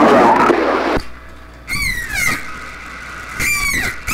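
CB radio speaker: a noisy incoming signal cuts off about a second in, then three falling electronic chirps come over the channel.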